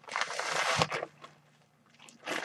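Plastic mailing package crinkling and rustling for about a second as it is handled to be cut open.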